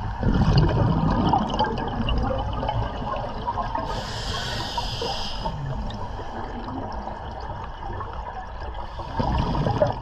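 Scuba breathing heard underwater: a rush of exhaled bubbles just after the start that tails off into gurgling, a hiss of inhalation through the regulator from about four to five and a half seconds in, then bubbling again.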